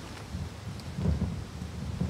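Wind buffeting an outdoor microphone: an uneven, gusting low rumble, strongest about a second in.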